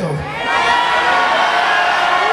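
Concert audience cheering and shouting, many voices overlapping at a steady level.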